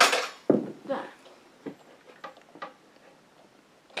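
Household things clattering and breaking: a loud crash at the start, another about half a second in, then a few lighter knocks.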